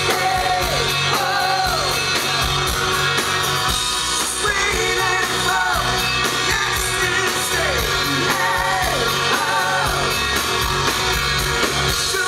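Live rock band playing a song, with a sung lead vocal over acoustic guitar, electric guitar, keyboards and drums.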